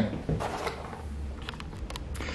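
Light handling noise: a few faint clicks and knocks, a small cluster near the end, over a low room hum.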